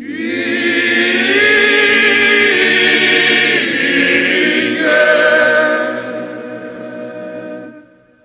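Male vocal ensemble singing a cappella in Zakynthian polyphony, a chord entering abruptly and held. About five seconds in the harmony moves to a new chord, which then softens and stops shortly before the end.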